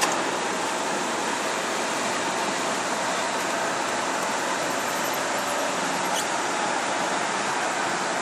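Steady road noise of a car driving in traffic: an even hiss of tyres and rushing air, with no marked changes.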